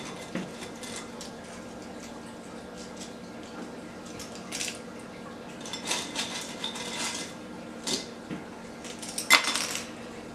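Handfuls of dried banana chips dropped into a glass jar of trail mix, clattering against the glass and the nuts and candies in several short rattling bursts, the last and loudest near the end.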